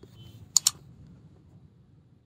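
Mouse-click sound effect: a quick double click about half a second in, over faint low background noise.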